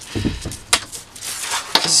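Handling sounds of paper and foil sheets being picked up and moved on a workbench: a dull bump near the start, a sharp click a little under a second in, and paper rustling near the end.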